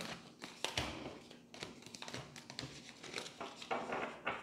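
A deck of tarot cards being shuffled by hand: soft, irregular flicks and rustles of card against card.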